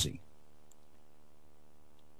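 The last of a man's spoken word, then a faint steady hum in a pause, with one tiny click about two-thirds of a second in.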